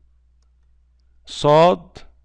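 Quiet room with a low steady hum for over a second, then a man speaks one short syllable and a single short click follows near the end.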